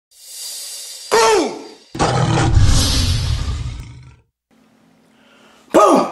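Logo sound effect of a big cat: a rising whoosh, a short growl that drops steeply in pitch, then a long, low tiger roar of about two seconds that fades out. A faint hum follows, and a man's voice starts right at the end.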